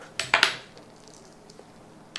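An Allen key clinking on the metal bracket bolt of a cat scratching post's perch as it is tightened: three quick metallic clicks in the first half second.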